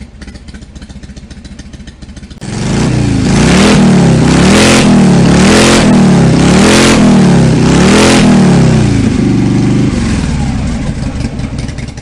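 Motorcycle engine running quietly, then starting up loud about two seconds in and being revved about five times, a second apart, each rev rising and falling in pitch. It settles to a steady run near the end. This is a loud engine revving.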